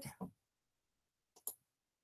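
Two quick computer mouse clicks about one and a half seconds in, the second louder, otherwise near silence. They come as a shared screen is switched to another browser tab.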